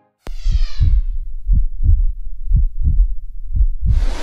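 Intro sound design: a sharp hit with a falling shimmer, then a deep heartbeat effect of paired low thumps, about one pair a second.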